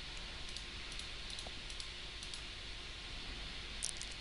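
A few faint computer mouse clicks over a steady hiss, with the clearest click near the end.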